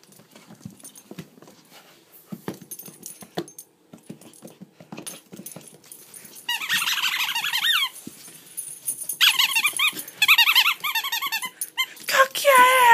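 Small dog playing with a toy on a hardwood floor: scattered light taps and clicks, then two spells of high, wavering squeals, the first about six seconds in and the second about nine seconds in.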